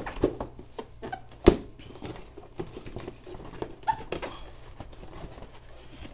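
Cardboard retail box being handled and turned over: a scatter of light knocks, taps and scrapes on the cardboard, with one sharp knock about a second and a half in.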